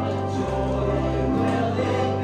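Gospel music: a choir singing over held chords, the bass note changing about once a second.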